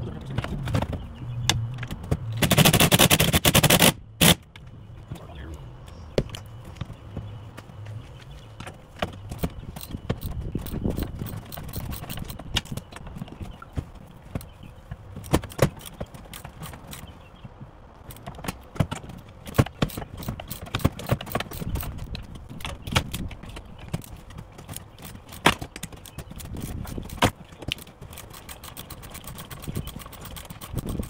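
Hand tools clicking and knocking against the parts around a Kawasaki jet ski's handlebars as a corroded, stuck part is worked loose: irregular sharp clicks and taps, with a loud noisy burst nearly two seconds long about two seconds in.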